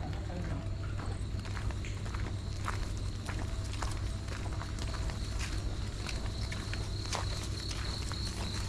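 Irregular footsteps on a dirt path, over a steady high-pitched insect trill and a low steady hum.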